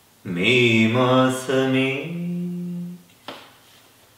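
A man singing solo and unaccompanied, a phrase of a Malayalam song in the Carnatic raga Abhogi, with gliding pitch ornaments. It closes on one long held note that stops about three seconds in, followed by a brief faint breath-like sound.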